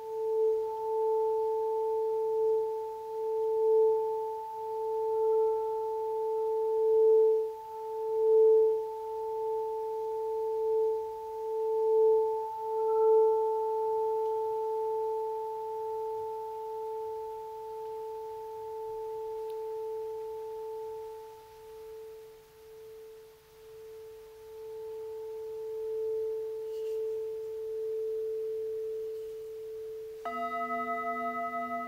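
A singing bowl ringing on one sustained low tone with a fainter higher overtone, its loudness wobbling in slow pulses. It fades a little past the middle and swells again near the end.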